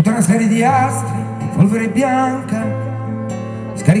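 Male voice singing in Italian over his own acoustic guitar, which is strummed and held in sustained chords, played live through a PA.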